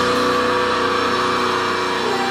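Funeral doom metal band playing live: distorted electric guitars and bass holding one long, steady chord.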